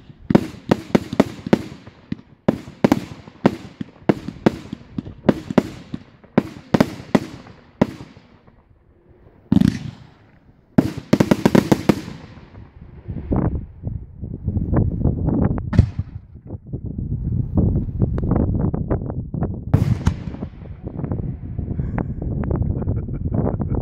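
Aerial fireworks bursting in a fast series of sharp bangs, about two or three a second. After a short lull about eight seconds in, dense crackling bursts follow, and from about thirteen seconds on comes a continuous rapid rattle of small crackling reports.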